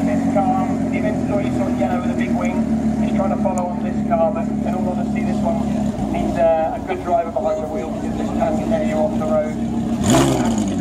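Lamborghini Huracán V10 supercar engine running at low revs as the car creeps forward, with crowd chatter around it. A sharp rev blip comes right at the end.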